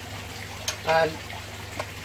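Steady low hum with water trickling from the running aquarium equipment in a fish room, and a light click about two-thirds of a second in as the pillar drill's table is handled.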